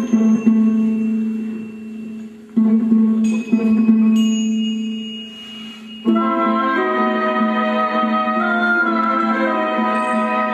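Orchestral film music: a low held note is struck again about three seconds in and left to ring and fade, with chime-like high notes on the strike. About six seconds in, a fuller sustained chord comes in over it and holds.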